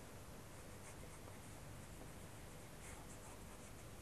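Faint scratching of a black wax crayon drawing lines on paper, a few short strokes over a low steady hiss.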